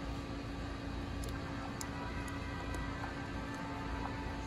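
Steady background hum and hiss, with a few faint, short high clicks through the middle.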